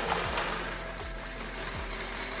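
Dried popcorn kernels poured from a plastic bag into a small ceramic cup: a continuous rattling of many small clicks. Background music with a steady beat plays underneath.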